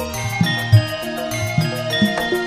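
Campursari ensemble playing: gamelan metallophones ring out steady struck notes over a low bass, with several short hand-drum strokes.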